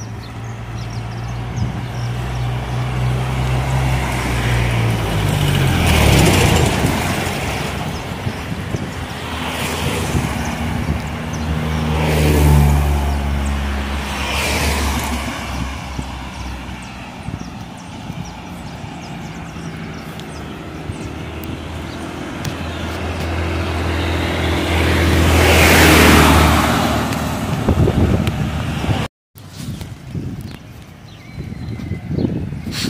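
Road traffic: several cars drive past one after another, each rising and fading as it goes by, the loudest pass coming near the end, over a low engine hum. The sound cuts out for a moment just before the end.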